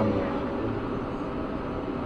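Steady low hum and hiss of a commuter train standing at a station platform, with no sharp events.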